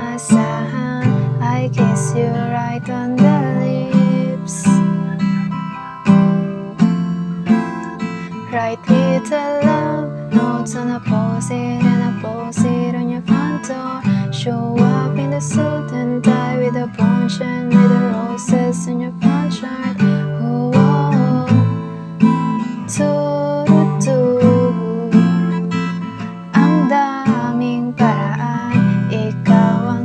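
Steel-string acoustic guitar strummed through the song's verse chords (D minor, G, C, F, then D minor, E minor, F, G) in a steady, even rhythm, with a voice singing along softly under the guitar.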